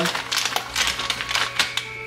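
Artificial moss and its packaging being handled: irregular crinkling and rustling made of quick small clicks.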